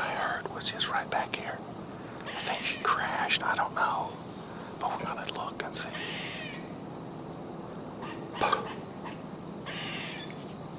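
A man's whispered speech in short phrases with pauses between them.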